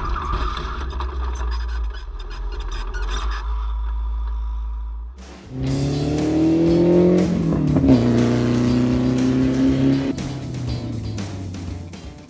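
Spec Racer Ford's 1.9-litre four-cylinder engine. First a low rumble with scattered rattling. After a short drop the engine revs up, breaks off in a gear change, holds steady, then eases off near the end.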